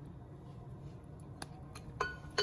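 Quiet handling of a glass blender jar as a bunch of fresh cilantro is put in: a few faint light taps about a second and a half in, over low steady background noise.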